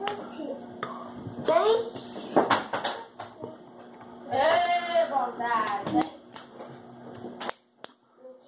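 Wordless vocal sounds from a person's voice, sliding up and down in pitch, with one longer high, arching call about halfway through. Several sharp clicks or slaps sound among them.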